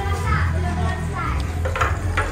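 Dishes and utensils clinking as someone washes up at a kitchen sink, with a few sharp clicks near the end, over a steady low hum and faint voices.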